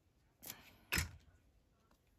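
Two short handling sounds about half a second apart, the second a sharp knock and the louder of the two: a plastic glue stick being set down on a cutting mat during paper crafting.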